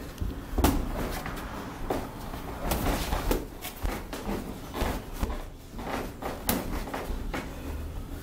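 Boxing gloves smacking on gloves, arms and headgear during sparring: a string of sharp, irregularly spaced punch impacts.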